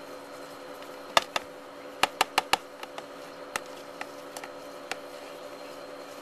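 Handling noise from a plastic reptile tub: sharp clicks and taps, with a quick run of four about two seconds in and a few single ones after, over a steady hum.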